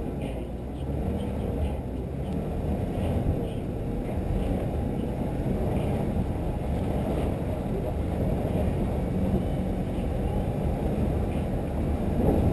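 Steady low wind rumble on a hood-mounted camera's microphone as a Toyota 4Runner drives along a snowy road, with the vehicle's running noise underneath.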